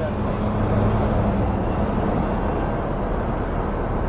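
Steady background rumble of noise in a pause between speech, with a faint low hum in the first second or so.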